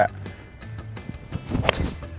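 A putter's face striking a golf ball in a full swing off the tee: one sharp click about three-quarters of the way through, over background music.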